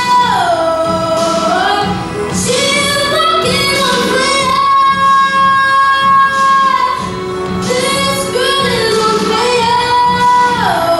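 A young girl singing a song into a handheld microphone, with long held notes; one note is held for about two seconds near the middle.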